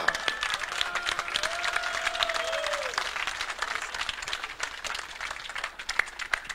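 Audience applauding, a dense patter of many hands clapping that eases off slightly toward the end.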